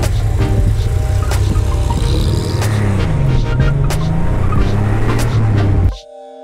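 Air-cooled Porsche 911 flat-six running at road speed, filmed from alongside. Its pitch drops and then climbs again about halfway through, and the sound cuts off suddenly at the end.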